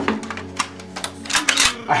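A quick, irregular series of sharp clicks and clacks over faint opera music.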